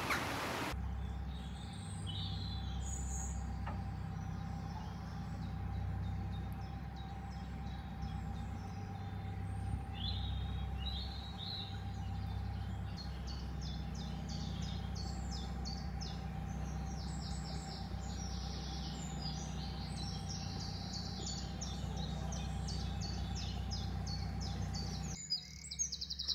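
Many small birds chirping and singing, busier in the second half, over the steady low running of a narrowboat's engine, which drops away near the end.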